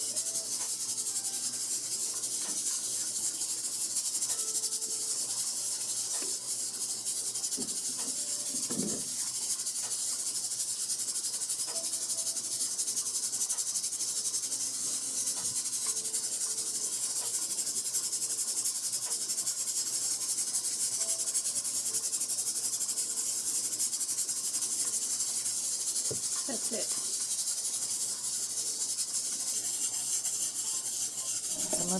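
A steady high hiss from a pressure canner running on the stove, with a few soft rubs and knocks of a cloth wiping glass jar rims.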